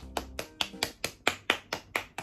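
Rapid, even hand clapping, about five sharp claps a second.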